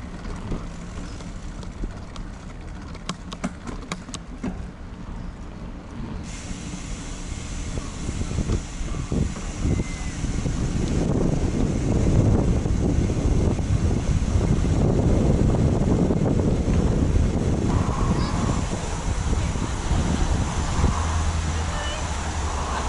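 Low rumble of wind on the microphone and bicycle tyres rolling over brick block paving, with a few sharp clicks in the first few seconds. It grows clearly louder about halfway through.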